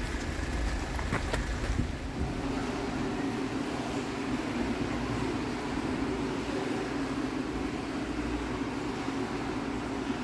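Street traffic noise from slow, jammed cars on a snowy road for about the first two seconds. Then a steady, even low hum of building machinery, as from a pool hall's ventilation.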